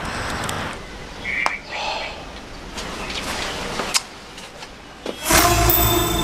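Outdoor background noise with traffic and a few small clicks. About five seconds in, a music cue starts with a loud, low held chord.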